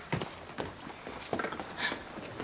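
A few light footsteps on an indoor floor, with small knocks spaced about half a second apart.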